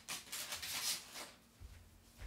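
Paper rustling as it is handled, several crinkly strokes in the first second or so, then a faint low bumping near the end.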